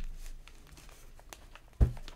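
A tarot card deck being handled and shuffled in the hands: light card rustles and clicks, with one loud, short, low thump near the end.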